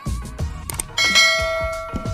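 A bell-chime sound effect for an on-screen subscribe-button animation's bell icon, starting suddenly about a second in and ringing on with several steady tones, over background music with a steady beat.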